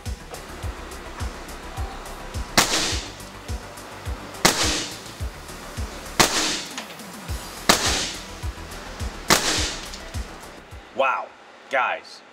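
Five shots from a shrouded .22 Air Arms S510 XS Tactical PCP air rifle, each a sharp crack with a short tail, spaced about one and a half to two seconds apart, over background music with a steady beat.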